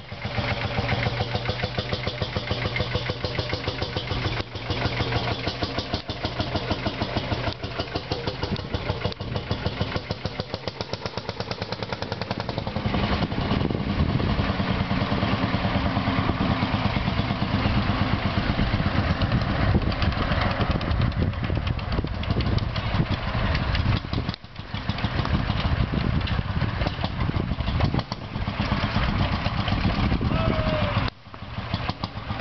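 Vintage tractor engines running as tractors drive past on a dirt track, with a steady, evenly spaced firing beat. The engine sound grows louder about thirteen seconds in.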